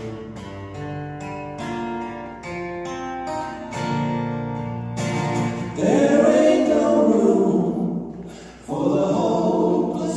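Two acoustic guitars play a picked instrumental passage, then about six seconds in several voices come in singing together over them, much louder, with a short break just before the end.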